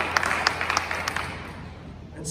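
Congregation applauding with many sharp hand claps, thinning out and dying away about a second and a half in.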